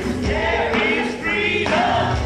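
Live worship band: several voices singing together over acoustic guitar and keyboard accompaniment.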